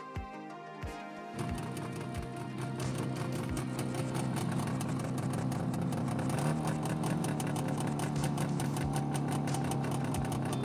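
Background music over a Sampo Rosenlew HR86 forest harvester at work: a steady machine drone with a rapid rattle that comes in after about a second and steps up in pitch a little past halfway.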